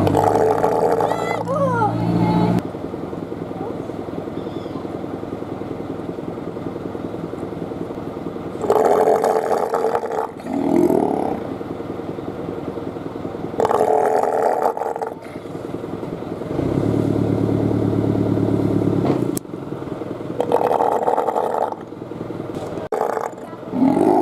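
Two South American sea lions calling in turn: loud, hoarse roars a few seconds apart, one a longer, lower call about two-thirds of the way through.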